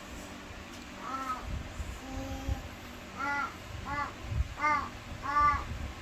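A toddler making short, high-pitched vocal calls, about six in a row, each well under half a second and closer together in the second half.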